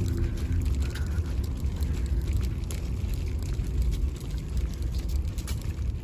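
Steady low rumble of wind and handling noise on a handheld camera microphone carried while walking, with faint light ticks scattered through it.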